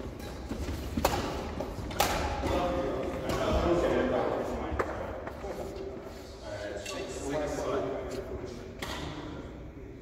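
Badminton rackets striking a shuttlecock in a doubles game, a few sharp smacks about 1, 2, 5 and 9 seconds in, echoing in the hall, with players' voices in between.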